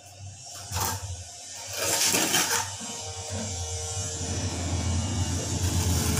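A hand tool knocking once and then scraping at the edge of a ceramic floor tile, over a low steady hum that comes in about two seconds in.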